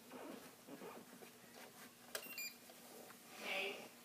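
Spektrum DX4E radio transmitter being handled while it is put into bind mode: a click about two seconds in, followed by a few quick high electronic beeps. A short hissy sound follows near the end.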